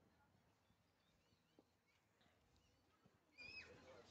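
Near silence outdoors, with faint scattered bird chirps and one louder, higher call near the end.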